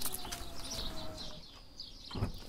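Birds calling faintly in the background outdoors, a few short chirps over quiet ambience.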